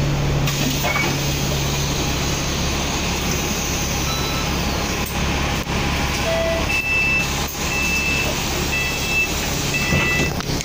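Bus engine idling at a stop while the exit doors open, then the door-closing warning sounds: a short high beep about once a second, starting about seven seconds in.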